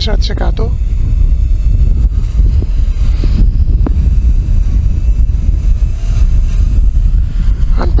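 Strong gusting wind buffeting the microphone: a loud, uneven low rumble.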